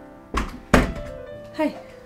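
Two dull thuds on a wooden bedroom door, less than half a second apart, the second louder, over soft background music.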